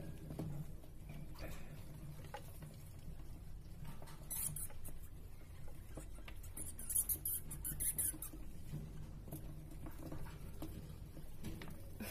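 Degus dust-bathing in a glass dish of bathing sand, with scratchy rustling bursts as they roll and dig in it, loudest about four and a half seconds in and again around seven to eight seconds. A faint low hum runs underneath.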